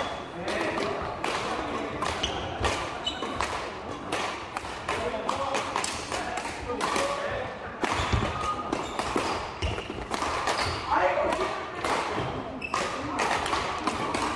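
Badminton play: rackets striking the shuttlecock again and again, with thuds of footfalls on the wooden court, amid players' voices in a large hall.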